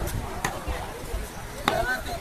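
Butcher's cleaver chopping beef on a wooden log chopping block: two heavy chops a little over a second apart, the second louder.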